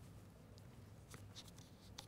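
Near silence: room tone with a low hum and a few faint clicks and rustles.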